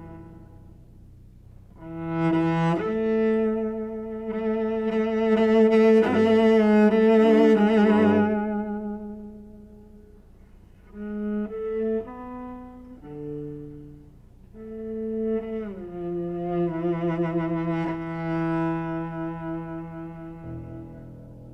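Solo cello played with the bow in a slow passage: long sustained notes with vibrato, a phrase that swells loud and then fades, a few shorter notes, and another long held phrase near the end.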